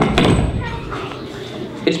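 Earthquake sound effect made at a microphone: a knock, then a low rumble that fades over about a second, for the land trembling and shaking.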